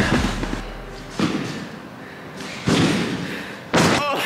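Feet landing on a trampoline bed as a gymnast bounces: three heavy thuds a second or so apart, the last, near the end, the loudest.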